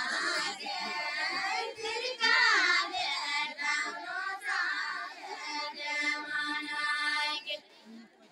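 Group of women singing a Nepali deuda folk song in high voices, with no instruments heard. The phrases bend and glide, then a long steady note is held near the end and breaks off briefly.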